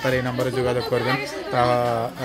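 Speech only: a person talking in Bengali without pause.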